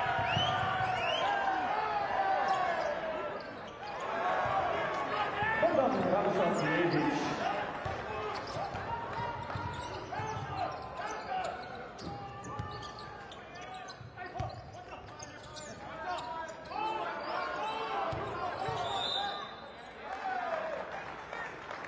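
Basketball game in a large indoor arena: a ball bouncing on the hardwood court under the voices of players and crowd echoing in the hall.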